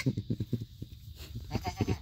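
A goat's low, rapid grunting, in two short spells of quick pulses.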